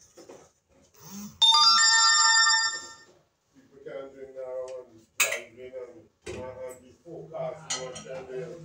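A loud, bell-like ringing tone with several clear pitches sounds about a second and a half in, holds steady for about a second and a half, then stops. A voice follows in the background.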